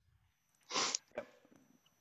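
A short, breathy burst from a person, about three-quarters of a second in, followed by a quiet spoken "yep".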